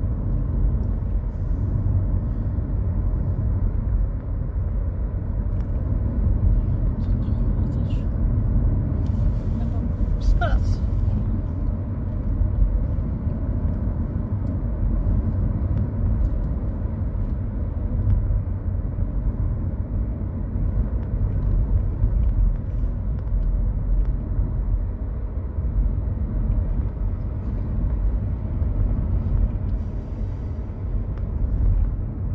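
Steady low rumble of a car's engine and tyres on the road, heard from inside the moving car's cabin, with a brief thin squeak about ten seconds in.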